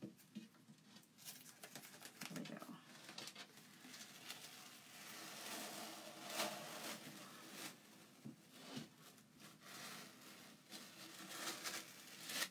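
Adhesive plastic silkscreen transfer being peeled slowly off a painted board: a faint crackling rustle with small clicks, swelling near the middle as more of the sheet comes away.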